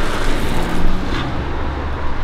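A car passing close by on the street, a low engine-and-tyre rumble that grows louder in the second half.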